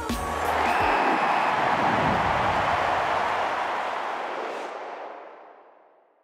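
Outro music ending in a logo sting: the beat and bass stop within the first second, leaving a dense wash of noise, like a swelling cymbal or reverb tail, that slowly fades out over about five seconds.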